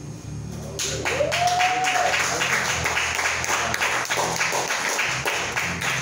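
Small audience applauding, the clapping starting about a second in and holding steady, with one voice calling out in a brief rising whoop near the start.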